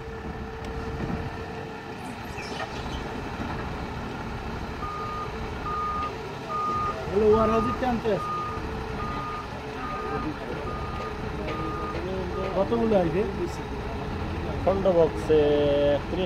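A forklift's engine runs steadily while a reversing alarm beeps about ten times, a little over once a second, through the middle of the stretch. Voices call out briefly a few times.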